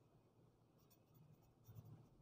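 Faint scratching of a ballpoint pen writing on lined paper, in two short runs of strokes.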